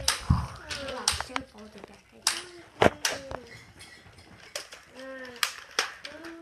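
Toy Nerf blasters being handled and fired: several sharp pops and clacks at irregular intervals, with short bits of a child's voice between them.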